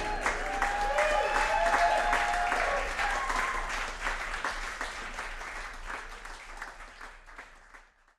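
Audience applauding and cheering after a live band's song ends, dying away gradually until it stops at the end.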